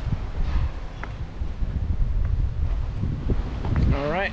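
Wind buffeting the camera's microphone outdoors: a gusty low rumble that rises and falls throughout.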